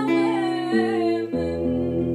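A woman singing with a wavering voice over an acoustic guitar's picked chords. Her voice stops about a second in, and the guitar goes on alone, changing chord.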